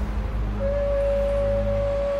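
A shofar blown in one long, steady, unbroken note that begins about half a second in, over a low background music drone.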